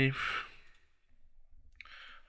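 A man breathes out audibly just after finishing a word, then there is quiet room tone, and a short breath near the end.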